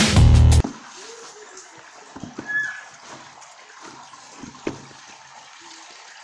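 Electronic background music with a heavy beat cuts off suddenly about half a second in. After that come faint, irregular soft squishing sounds of hands kneading flour dough in a plastic basin.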